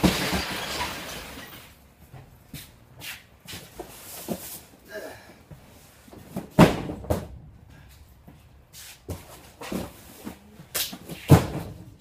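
Cardboard freight boxes being unloaded by hand inside a truck trailer, knocking and thudding as they are set down onto the unloading ramp. Several sharp knocks, the loudest about six and a half and eleven seconds in, with a longer rush of scraping noise in the first two seconds.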